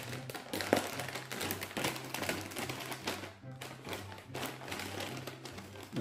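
A plastic chip bag being pulled open and crinkled, a dense run of crackles and rustles, over faint background music with a steady low bass line.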